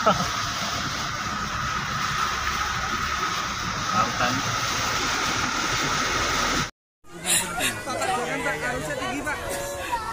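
A steady rush of a vehicle driving through floodwater, heard from inside the cab, with water washing against the vehicle. It cuts off suddenly near the seventh second, and after a moment of silence voices chatter over the noise of floodwater.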